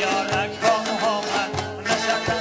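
Afghan Badakhshi folk music: a long-necked lute plucking a quick melody with rhythmic accompaniment.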